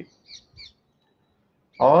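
A small bird chirping twice in quick succession, faint beside the voice.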